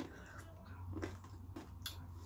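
Faint chewing of a chocolate truffle, with a few soft, scattered mouth clicks.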